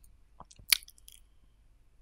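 A few small mouth clicks and a lip smack close to the microphone, with one sharper click about three quarters of a second in.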